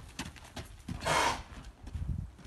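A yearling Arabian filly's hooves striking gravel as she canters and kicks on a lunge line, a few sharp knocks, then a loud breathy rushing burst lasting about half a second a little after a second in.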